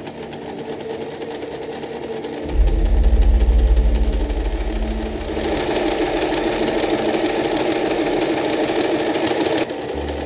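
Necchi Millepunti domestic electric sewing machine stitching piping cord into a fabric strip, running in stretches of changing speed. It is loudest for a few seconds near the start.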